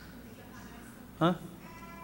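A man's short questioning 'Hã?' about a second in; otherwise quiet room tone.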